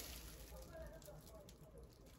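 Faint crinkling rustle of plastic bubble wrap being pulled off a small cardboard box.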